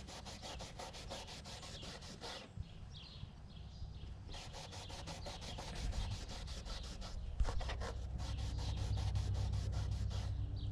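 A cloth rag being rubbed in quick back-and-forth strokes over a rough, weathered cedar board, working stain into the wood. The strokes run at several a second, with a brief pause about two and a half seconds in and a small knock about seven and a half seconds in.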